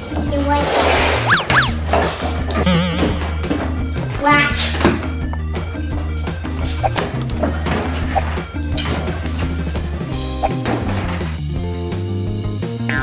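Background music with a steady beat and bass line, with voices over it.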